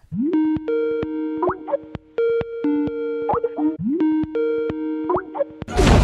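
Short electronic jingle: a two-note synth figure with little rising swoops and clicks, played three times over. Near the end it is cut off by a sudden loud burst of noise, like a crash or blast sound effect.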